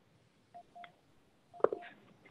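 Faint, short electronic beep-like tones: a couple about half a second in, then a sharp click with another tone about a second and a half in.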